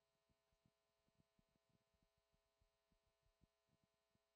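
Near silence: faint steady hum with a few soft low thumps.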